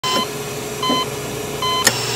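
Heart-monitor style electronic beeps: three short, evenly spaced beeps over a steady hum, followed by a sharp click near the end.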